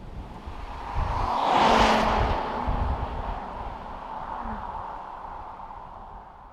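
Holden Caprice V's V8 sedan driving past: engine and tyre noise swell to a peak about two seconds in, with a steady low engine hum, then fade as the car moves away.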